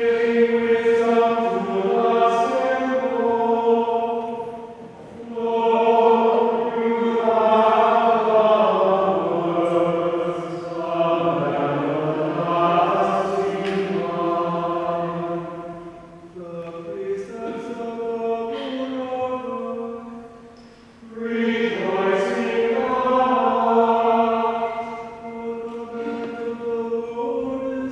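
Voices singing a chant-style melody in unison, in long held phrases with three short breaks between them. This is the sung psalm that follows a Scripture reading at Mass.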